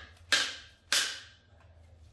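Thick acrylic panel struck hard against a hard surface twice, about half a second apart: sharp cracking smacks that show the sheet is stiff and strong enough not to bend or break.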